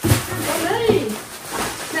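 Voices talking over the rustle of cardboard and plastic packaging being handled.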